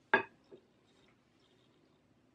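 A spoon clinks sharply against a glass mixing bowl, followed by a fainter second tap about half a second later, while sour cream is spread over a layered dip.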